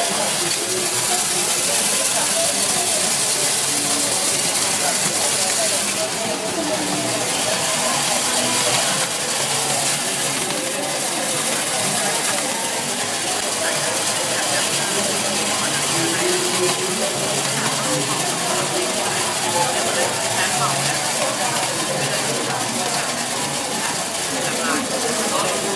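Optical colour sorter for coffee beans running, a steady hissing machine noise as the beans feed through it, with chatter of many voices in the background.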